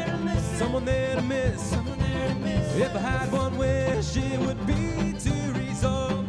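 A folk/bluegrass acoustic band playing: acoustic guitar strumming chords with mandolin, under a held melody line that slides in pitch.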